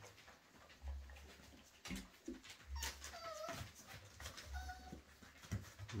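Cocker spaniel puppies whimpering faintly: a few short, high squeaks, about three seconds in and again near the end, with soft bumps of the litter moving about.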